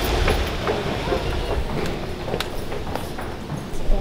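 Escalator running: a steady low rumble with scattered light clicks and knocks.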